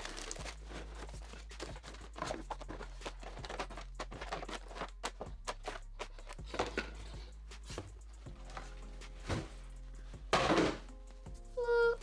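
Rustling and clicking of cardboard box flaps, plastic packaging and small plastic tubes being handled as items are lifted out of a parcel, with a louder rustle about ten and a half seconds in. Soft background music plays underneath.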